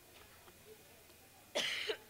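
A person coughing once, loudly and briefly, near the end, over faint room murmur.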